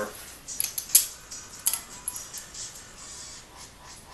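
Light metallic clicks and taps from valve-train lifters and rocker arms being pushed down by hand in an aluminum cylinder head: a few sharp clicks in the first two seconds, then fainter ticks.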